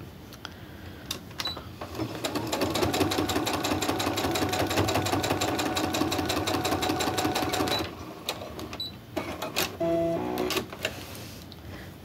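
Brother computerised embroidery-and-sewing machine stitching a seam through quilt scraps: a run of about six seconds of fast, even needle strokes that starts about two seconds in and stops abruptly. Scattered clicks from handling the fabric come before and after, and a brief stepped hum sounds near the end.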